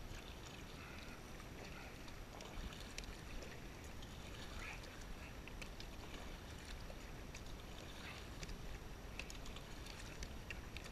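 Double-bladed kayak paddle dipping and pulling through calm water in steady strokes, with faint splashes and drips from the blades over a low steady rumble.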